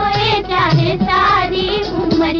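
Old Hindi film song: singing over music with a steady drum beat about twice a second.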